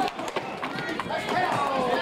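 Indistinct voices of spectators and young players at a roller hockey game, overlapping and unclear, with scattered clacks of sticks and skates on the rink floor.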